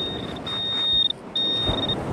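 Garrett AT pinpointer giving a steady high beep in pulses of about half a second with short gaps as it is worked through beach shingle, signalling metal close to its tip.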